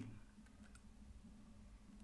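Near silence: room tone with a couple of faint clicks a little under a second in.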